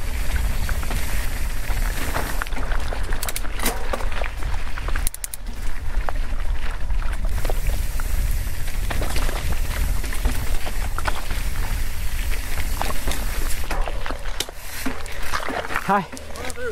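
Wind buffeting the bike-mounted action camera's microphone in a steady low rumble, with tyres crunching over loose rock and the mountain bike rattling in scattered clicks on a rocky downhill trail.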